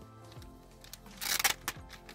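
Clear plastic bag crinkling as gloved hands handle it, a burst of rustling a little after a second in and a brief second one just after, over faint background music.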